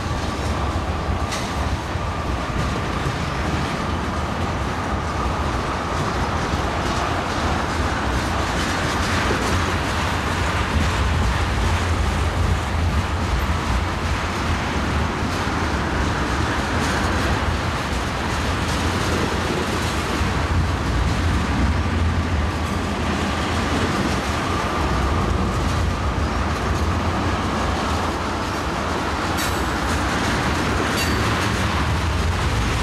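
Freight train of tank cars rolling past close by: a steady rumble of steel wheels on the rails with the clickety-clack of wheels over rail joints. A faint, thin wheel squeal comes and goes over the top.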